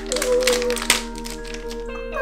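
Background music with held notes, over the crinkling and tearing of a foil blind-bag sachet being opened by hand, with one sharp crackle about a second in.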